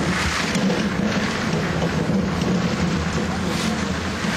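Steady machine noise: an engine running with a constant low hum under a broad hiss.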